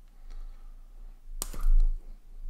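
Faint handling clicks, then one sharp snap of hard plastic as an action figure's hand is forced out of its wrist joint, followed at once by a low thud of the figure being handled. The owner takes the snap for the joint breaking.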